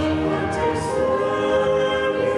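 Choir singing slowly with long held notes.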